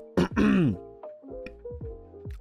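A man clears his throat once, with a falling pitch. Faint background music with held notes follows.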